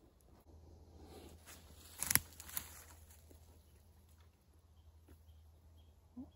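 Footsteps rustling through dry leaf litter, with one louder crunch about two seconds in and a few lighter clicks after it.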